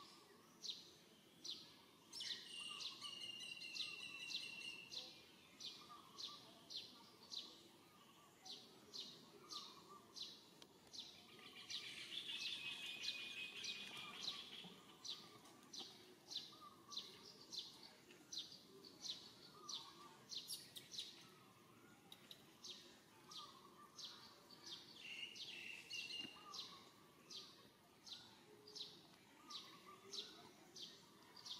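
Faint birdsong: a short, high chirp repeated steadily about twice a second, with longer, higher phrases from other birds joining in a couple of seconds in, around the middle and near the end.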